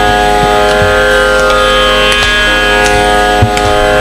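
Carnatic music: a steady shruti drone under a held note that slides off about two seconds in, with a few sparse mridangam strokes, the sharpest about three and a half seconds in.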